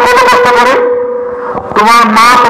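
A man's voice through a public-address loudspeaker, with a steady ringing tone of microphone feedback under it. The voice stops after less than a second, and the feedback tone carries on alone through the pause.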